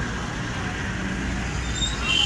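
Steady outdoor background noise: a low rumble under a hiss, with faint voices of the onlookers mixed in.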